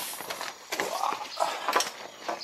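Footsteps on gravel, a few steps in quick succession.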